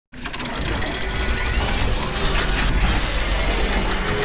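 Sound-effect of turning, ratcheting gears for an animated intro: dense fast clicking over a deep rumble.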